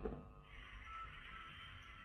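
Faint steady hiss from an open headset microphone with no one speaking: near-silent room tone.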